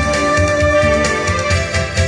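Instrumental backing music for a sung Taiwanese pop song: a keyboard melody of held notes over a steady bass beat, with no voice over it.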